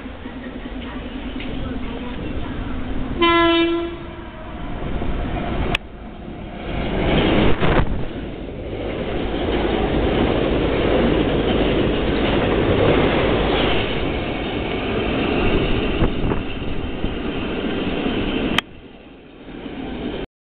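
Taiwan Railway EMU1200 electric multiple unit approaching and running through a station without stopping: one short horn blast about three seconds in, then the loud rush of the cars passing close by for about twelve seconds, which cuts off suddenly near the end.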